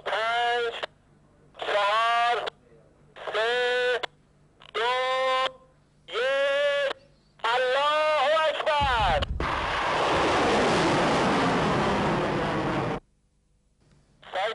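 Missile launch: a rocket motor ignites about nine seconds in with a loud, rushing roar that lasts about four seconds and then cuts off suddenly. Before it, a voice over radio calls out short single words at even intervals, about every second and a half.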